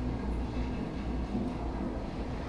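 Steady low hum with faint background hiss, with no distinct event.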